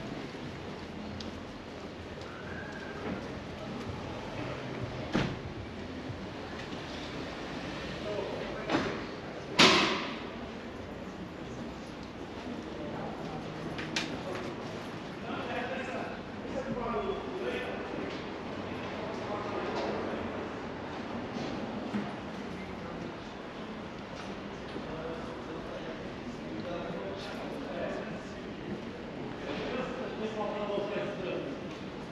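Busy pedestrian street ambience with indistinct voices of passers-by talking, mostly in the second half. Several sharp knocks or bangs sound over it, the loudest about ten seconds in.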